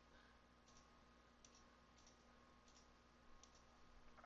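Near silence with a slow series of faint computer mouse clicks, about one every second or less.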